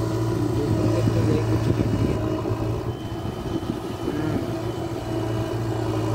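Diesel engine of a JCB backhoe loader running steadily while the backhoe arm swings back from the trolley and lowers to dig. It gets a little quieter in the middle.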